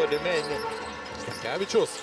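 A basketball being dribbled on a hardwood court.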